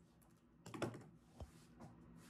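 Several pairs of scissors clicking and clacking against each other as they are gathered up: a quick cluster of light clicks a little under a second in, then two single knocks.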